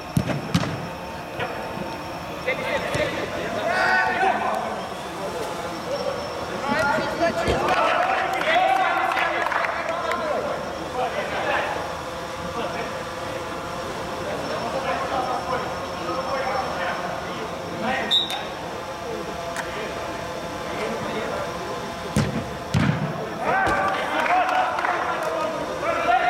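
Footballers shouting and calling to each other during a match, with a few sharp thuds of the ball being kicked, inside an inflatable sports dome.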